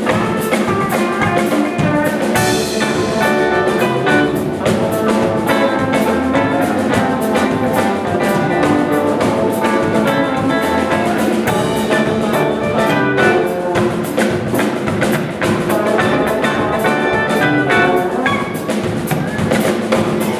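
Live electric blues band playing an instrumental passage: electric guitars and bass over a steady drum-kit beat, with a louder cymbal wash about two seconds in.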